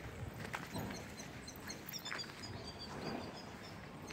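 Faint outdoor ambience with scattered short, high bird chirps and a few faint clicks.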